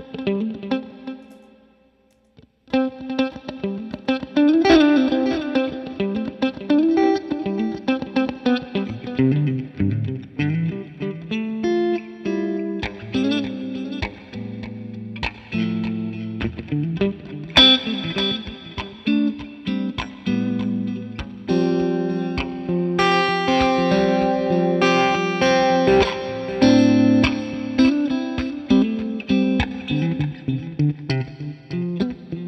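Electric guitar played through a Benson Preamp pedal into a Fender '65 Twin Reverb amp, with a mix of single notes and chords. The playing stops briefly about two seconds in, then carries on without a break.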